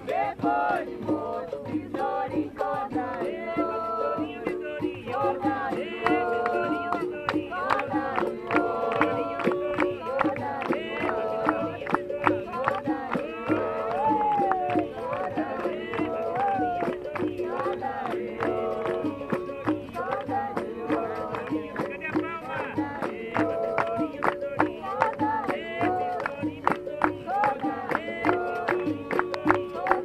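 Live capoeira roda music: berimbaus (musical bows) and pandeiros playing a steady rhythm under singing voices, with sharp percussive strokes throughout.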